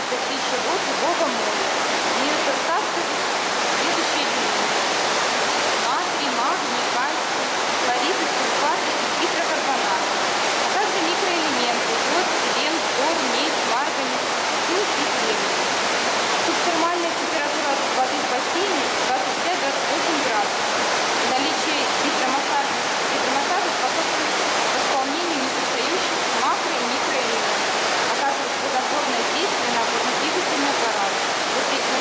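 Steady rushing and bubbling of water from a swimming pool's underwater hydromassage jet churning the surface.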